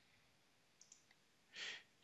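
Near silence between narrated sentences, with a few faint clicks about a second in. Near the end there is a short, soft breath before speech resumes.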